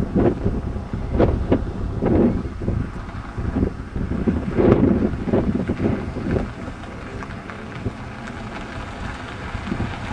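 Wind buffeting the microphone in uneven gusts, heaviest in the first half and easing off about two-thirds of the way through, over the low sound of a minivan rolling slowly past.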